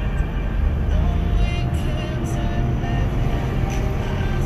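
Music playing over the steady low rumble of a car driving on the road.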